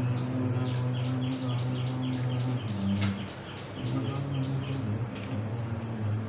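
Men's voices chanting Sanskrit mantras in a low monotone, holding long steady notes. Over them a bird chirps in a quick, even run of short falling chirps, about four a second, that stops near the end.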